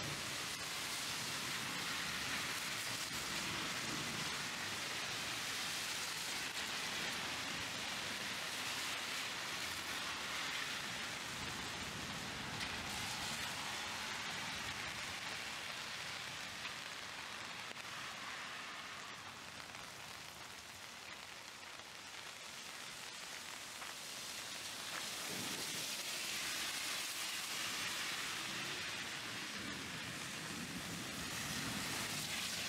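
Heavy rain downpour: a dense, steady hiss of rain falling on the street and surfaces, easing a little about two-thirds of the way through before building back up.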